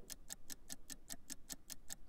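Countdown-clock ticking sound effect: fast, even ticks, about ten a second.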